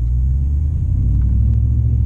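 Low, steady rumble of a pickup truck's engine and road noise heard inside the cab while driving. It grows louder right at the start and then holds.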